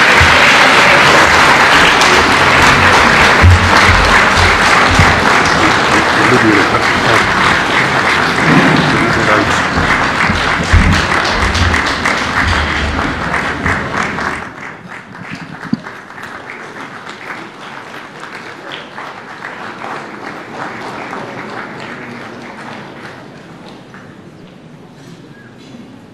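A large audience applauding loudly, with music playing under it. About fourteen seconds in the sound drops abruptly to quieter, thinner clapping.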